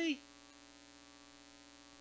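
Steady electrical mains hum in the sound system, a low even buzz with one clear steady tone, heard once the last spoken word fades in the first moment.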